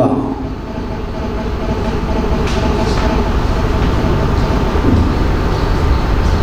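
Steady low rumbling noise that slowly grows louder, with a faint steady hum above it.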